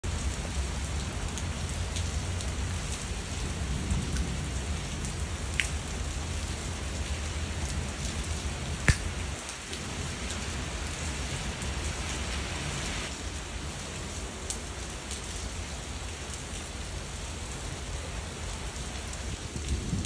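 Heavy rain falling steadily on the street and nearby surfaces. A low rumble runs under it through the first half and fades out about nine seconds in, just after a single sharp tap.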